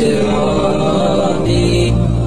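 An Arabic nasheed: a voice holds a long, wavering sung note without instruments, and a deep steady hum joins it about one and a half seconds in.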